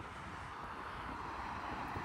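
A car driving past on the road: steady tyre and engine noise, growing slightly louder.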